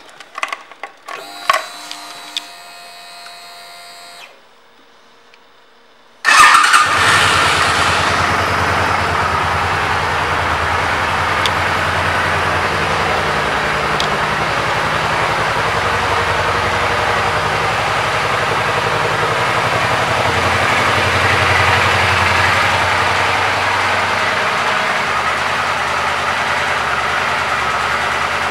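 2011 Suzuki Boulevard C50T's 805 cc V-twin started about six seconds in, catching at once with a brief burst of revs and then idling steadily. A few light clicks and handling noises come before it.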